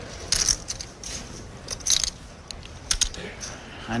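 Clay poker chips clicking together in a few short clattering bursts as a player handles his chip stack at the table.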